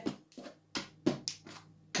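Wooden draughts pieces knocking on a wooden board, about five light clicks over two seconds, as pieces are moved, set down and captured ones picked up during an exchange sequence.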